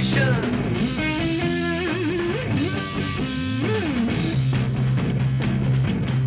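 Hard rock recording: an electric guitar break with held, bending and sliding notes over drums and a steady bass line, between sung lines.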